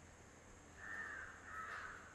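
Faint bird calls, two in quick succession, starting almost a second in.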